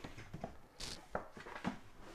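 Cardboard packaging being handled: a few light knocks and taps of the box, with a short scraping rustle of cardboard sliding against cardboard just before a second in.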